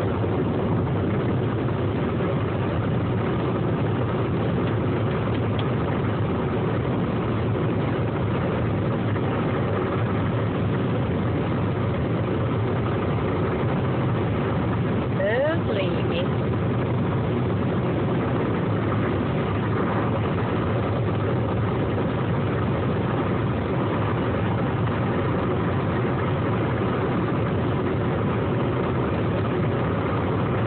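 Steady engine and road noise inside a moving Honda car's cabin. About halfway through, a brief high sound rises in pitch.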